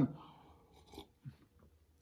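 A man sipping coffee from a ceramic mug and swallowing: a few faint, short mouth sounds about a second in and again shortly after, with quiet between them.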